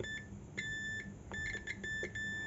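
Digital multimeter's continuity buzzer beeping as its probes touch a keypad pad and a component on a Jio F211 board: a short blip, then two longer beeps of about half a second. The beep cuts in and out as probe contact makes and breaks. It signals an electrical connection between the key's pad and the component where the jumper goes.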